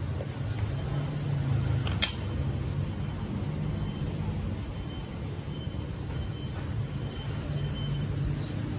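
Low, steady rumble of background noise, with one sharp click about two seconds in and a faint thin high tone in the second half.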